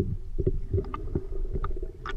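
Underwater sound picked up by a camera held below the surface while swimming: a muffled low rumble of moving water, with a few faint clicks.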